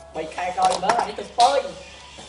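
A high-pitched voice says a few short words or exclamations and stops about three-quarters of the way through.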